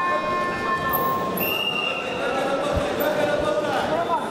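Voices and calls echoing in a large sports hall, with a couple of dull thumps late on, typical of feet stepping on a wrestling mat.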